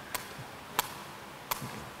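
A sepak takraw ball being headed repeatedly, three sharp taps about 0.7 s apart as it bounces off the player's head.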